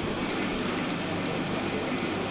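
Steady low hum of room machinery such as an air conditioner or drink fridges, with a few faint light crackles in the first second.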